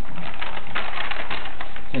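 Paper being handled and rewrapped into a cone: a quick run of small crackles and rustles from the stiff paper.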